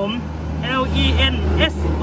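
A steady low drone, as of a vehicle engine running, under a man's speech; the drone swells in the middle.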